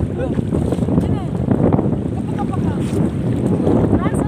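Steady wind rumble on the microphone over sea water sloshing around waders, with faint voices.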